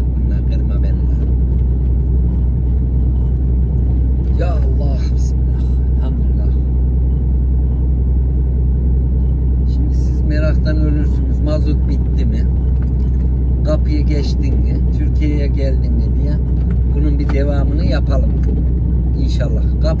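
Diesel truck engine running under way, a steady low drone heard from inside the cab.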